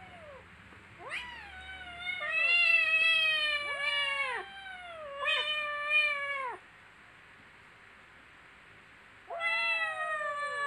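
Kittens meowing at each other in a play fight: a run of overlapping drawn-out meows, each rising then falling in pitch, from about a second in until past halfway, then a pause and another long meow near the end.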